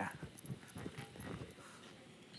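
Cream pan sauce sputtering and popping in a very hot nonstick cast iron skillet as it is lifted off the burner: irregular short crackles that die away after about a second and a half.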